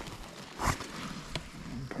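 Handling noise while a freshly caught perch is lifted over the snow: one short soft crunch or rustle about a second in, then two light clicks.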